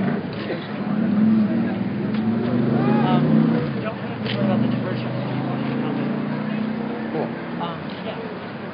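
A motor vehicle's engine running close by, a steady low hum that is loudest in the first half, with people's voices over it.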